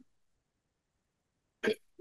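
Near silence, the microphone cut out, broken about one and a half seconds in by a single brief vocal sound from the man.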